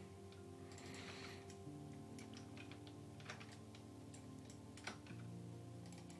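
Faint, scattered clicks of a computer mouse selecting edges, with a faint steady hum underneath that shifts in pitch twice.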